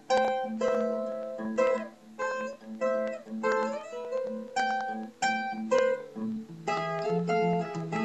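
Solo cutaway acoustic guitar fingerpicked: a melody of plucked, ringing notes over a repeating low bass note, with one note sliding up in pitch about three and a half seconds in.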